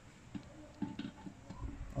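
Light clicks and taps of the weighing pan of a digital price computing scale being handled and set down onto the scale's posts, with a soft low thump near the end.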